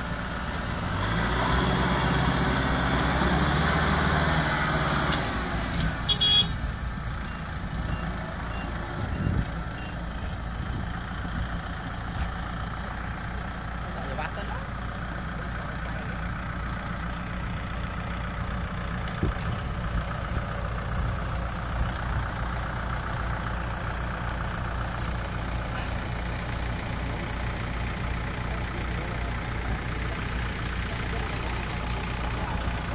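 Kubota M6040SU tractor's four-cylinder diesel engine working hard for the first few seconds as the tractor pulls out of the mud, then running steadily. A sharp knock comes about six seconds in.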